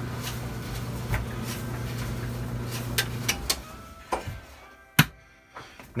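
Electric clothes dryer running with a steady low hum, then shutting off a little past halfway and fading as it winds down. A few sharp clicks follow, the loudest near the end, as the power switches back to the EV chargers.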